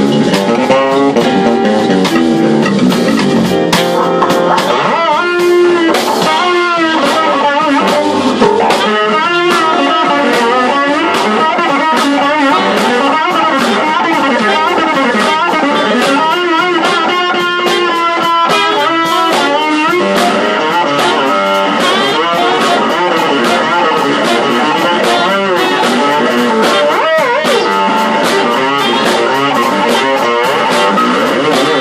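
Warwick fretless electric bass playing a solo of fast melodic lines over a drum kit.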